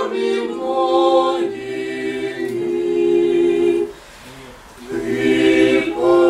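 Small mixed vocal ensemble of men and women singing Orthodox church chant a cappella in harmony, in sustained chords. A held chord breaks off about four seconds in for a short pause, and the singing resumes about a second later.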